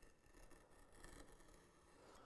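Faint, irregular scratching of a knife tip drawn along the wall of a groove in a wooden board, scoring it to stop tear-out.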